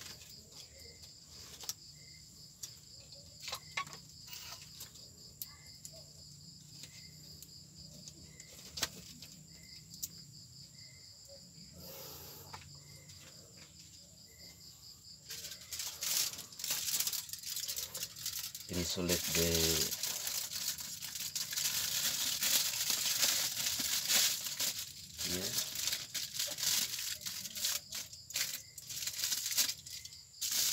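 Aluminium foil being crinkled and pressed around glassware, starting about halfway through and going on as a loud dense crackle. Before it, a steady high insect chirping with a few faint clicks of glassware being handled.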